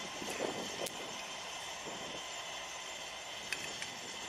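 Military cargo truck driving slowly away, its engine and tyres making a steady running noise, with a few faint clicks.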